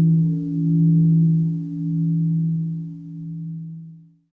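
A deep-toned struck bell ringing out. Its low hum swells and fades every second or so as it slowly dies away.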